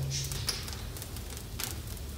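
Dry twigs burning in an open brick fireplace: a steady hiss of flames with a few sharp crackling pops, one about half a second in and a couple more near the end.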